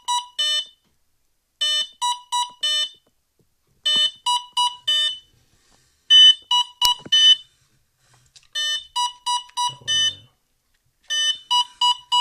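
ENERG Pro 40A brushless ESC beeping out its programming-menu codes through the E-MAX BL2220/07 outrunner motor: repeated groups of about four short high-pitched beeps, a new group every two seconds or so. This is the ESC announcing the governor-mode menu item while it waits for the throttle to select it.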